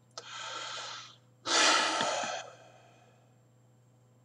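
A man breathing between sentences: a quieter breath in, then a louder, sigh-like breath out about a second and a half in.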